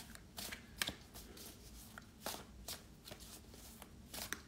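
A deck of metaphorical association cards shuffled by hand, cards dropped from one hand onto the packet in the other: a faint, irregular run of soft card slaps and flicks, about two or three a second.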